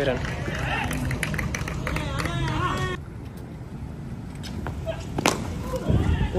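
Players' voices in the background, then about five seconds in a single sharp crack of a cricket bat striking the ball: a shot hit flat for six.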